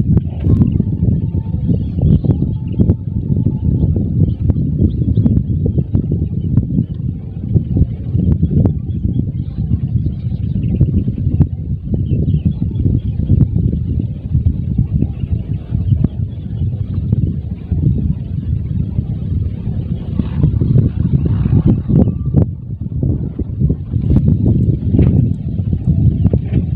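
Wind buffeting the microphone: a loud, gusting low rumble that rises and falls throughout.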